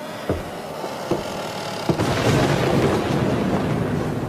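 Three sharp knocks a little under a second apart, then a sudden thunderclap about two seconds in that runs on as a loud, continuous rumble: a thunder sound effect laid over a spooky montage.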